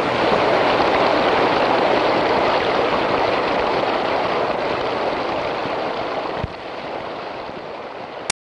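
Water rushing and churning steadily from a dredge discharge pipe into the sea. About six and a half seconds in, it drops in level with a short low thump, then fades.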